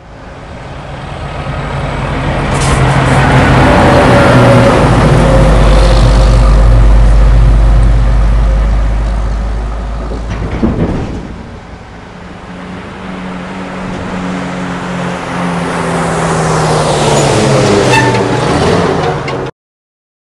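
A heavy vehicle's engine running, building over the first few seconds and easing off about halfway with a brief knock. It then builds again, its pitch shifting, before cutting off suddenly near the end.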